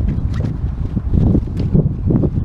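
Wind rumbling and buffeting against the microphone, with a few faint knocks.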